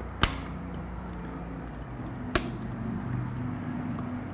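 Plastic screwless wall plate cover snapping onto its base plate: two sharp clicks about two seconds apart.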